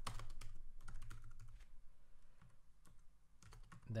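Typing on a computer keyboard: a quick run of key clicks for the first second and a half, thinning out to a few scattered keystrokes.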